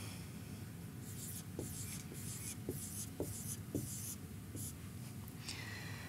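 Dry-erase marker writing on a whiteboard: a run of short, faint strokes as a decimal point and six zeros are drawn one after another.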